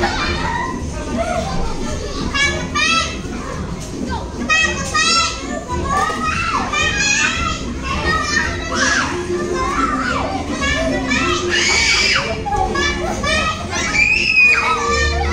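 A group of young children laughing, shouting and chattering at play, with repeated high-pitched squeals and one louder shriek near the end.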